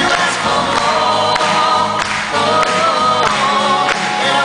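A man and a woman singing a pop ballad duet together into microphones, over live band accompaniment.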